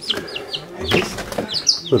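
Young chicks peeping: a run of short, high, falling peeps, with a brief burst of noise about a second in.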